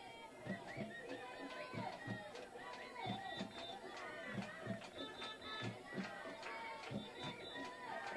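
Ballpark crowd of spectators chattering and chanting, many voices overlapping, with low thumps recurring irregularly under them.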